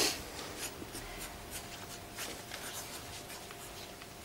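A pen writing on a small slip of paper, a string of short, irregular scratching strokes as a word is written out by hand.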